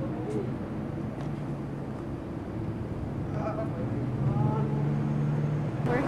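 A vehicle engine running steadily at idle, a low even hum that grows a little louder in the second half, with faint voices in the middle.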